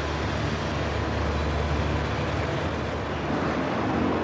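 Float glass production line machinery running, a steady mechanical rumble and hiss with a low hum.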